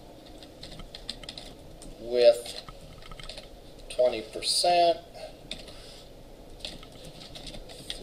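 Computer keyboard typing: a run of light key clicks. A person's voice is heard briefly twice over it, about two seconds in and again around the fourth to fifth second.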